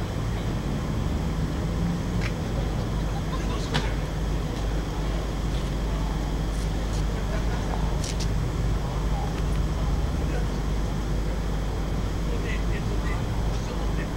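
Steady low rumble of outdoor background noise, with faint distant voices and a few brief clicks.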